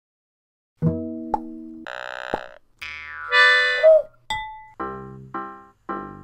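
Playful title music, starting just under a second in: a string of separate bright notes mixed with cartoon pops and boings, one sliding down in pitch, then settling near the end into an even run of notes that each start sharply and fade.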